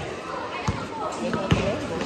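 A basketball bouncing on the court, three thuds about three-quarters of a second apart, among the voices of players and spectators.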